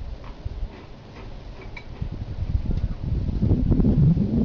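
Crunchy cereal being eaten from a bowl: scattered small clicks and crunches, growing heavier and louder near the end.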